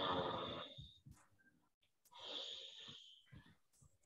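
Near silence on a video-call line: the end of a voice fades out within the first second, and a faint short hiss comes a little after two seconds in.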